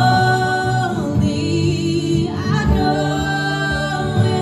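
Live acoustic duet: a woman singing long, held notes into a microphone over strummed acoustic guitar. She sings two phrases with a short break between them about a second in.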